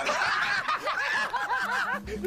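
Laughter: a run of quick, high-pitched laughing bursts, one after another.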